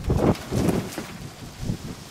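Strong wind buffeting the microphone in a few uneven gusts, the loudest just after the start.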